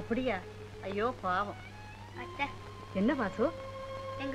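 Film dialogue: a woman and a boy speaking in short high-pitched phrases, over a steady low hum and held background music tones that come in about halfway through.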